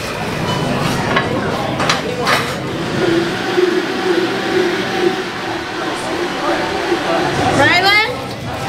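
Countertop blender running as a smoothie is blended, under background voices and the clink of dishes.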